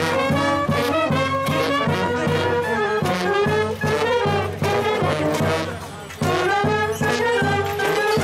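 Romanian fanfare brass band playing a lively tune, trombones and trumpets over a steady drum beat, breaking off briefly about six seconds in and then carrying on.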